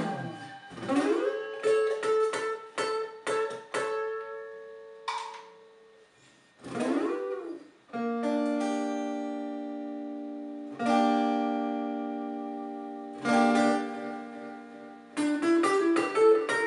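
Electric guitar playing rhythm: quick strummed chords and a rising slide, a short pause, then three chords each left to ring out and fade, with quick strums again near the end.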